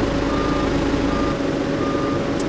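Inside the cab of a Shantui SR12-5 vibratory roller, its Weichai diesel runs at raised revs with the drum vibrating, a steady hum. Over it a reversing alarm beeps about once every 0.7 s. A deep rumble under the hum drops away a little past halfway.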